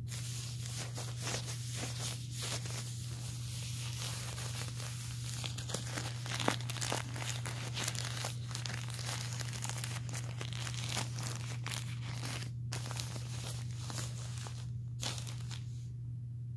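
Plastic-backed adult diaper crinkling and rustling as it is handled, with many small crackles and two brief pauses near the end.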